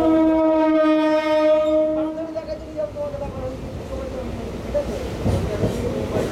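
Mumbai suburban electric train's horn sounding one long steady blast that stops about two seconds in, followed by the rumble of the moving carriage.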